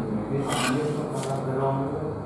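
Handling noise: dry-cell batteries and a small magnet being picked up and rubbed about on a cloth-covered table, with a couple of brief scrapes.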